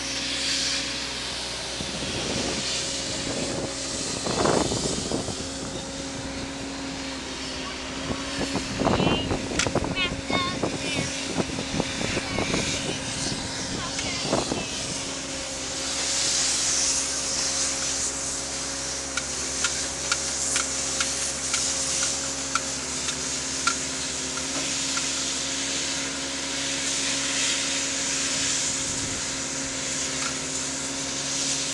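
Steady drone of road-work machinery engines running, with a few louder swells rising over it and scattered short clicks in the second half.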